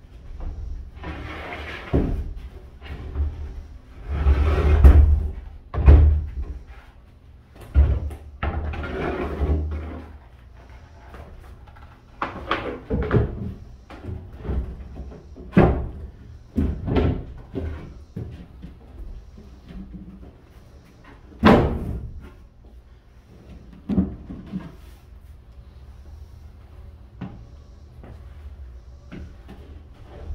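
Boat floor panels being slid, knocked and stepped on as they are fitted over a sailboat's hull frames: irregular scraping and knocks, with loud thumps about five, six and twenty-one seconds in.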